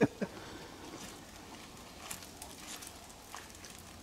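Quiet outdoor background with a few faint, sharp clicks, about two seconds in and again near the end.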